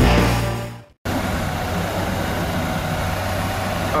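Music fades out in the first second, then after a brief silence a 1998 Ford Ranger's 2.5-litre four-cylinder engine idles steadily, running sweet.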